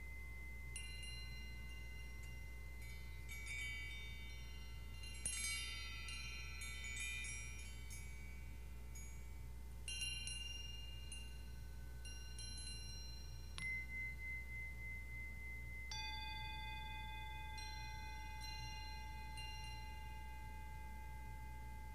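Small metal chimes struck by hand, giving high, bright tones that ring on and overlap. The strikes come in scattered clusters, busiest about five to seven seconds in, and a lower set of tones enters about sixteen seconds in.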